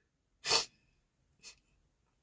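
A woman's short, sharp breath about half a second in, followed by a much fainter breath about a second later.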